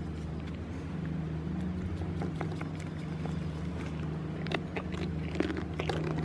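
A goat nibbling and chewing from a hand close to the microphone, with a few crisp crunches in the second half. Under it runs a steady low drone.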